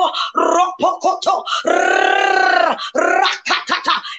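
A woman preacher's voice crying out in quick, short syllables, with one long held cry of about a second in the middle.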